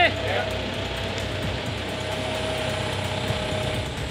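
Crane engine running at a steady speed, heard from inside the operator's cab as a steady hum.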